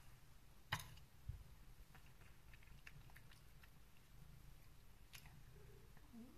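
Domestic cat chewing, heard faintly as a run of small soft ticks, with a sharper click under a second in and another near the end.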